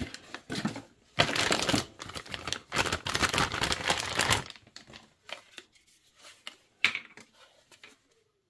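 A plastic packaging bag rustling and crinkling while it is opened and the cardboard box is handled, for about four and a half seconds. Then a few light clicks and knocks as the item is handled, with one sharper knock near the end.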